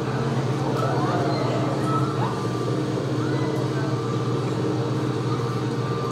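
Hydraulic excavator's diesel engine running steadily: a constant low drone.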